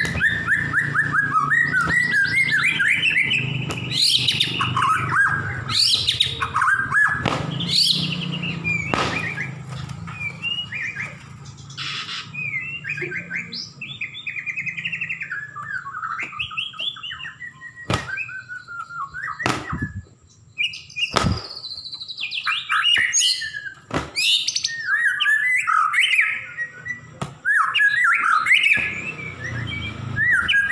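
White-rumped shama (murai batu, Bahorok strain) singing a long run of varied whistled phrases and rapid trills, with several sharp clicks in the second half.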